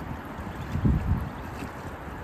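Wind buffeting the microphone over a low outdoor rumble, with a stronger gust a little under a second in.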